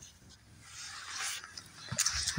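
Faint rustling of dry brush and dead leaves as loppers work among the stems, ending in a short sharp click just before the end.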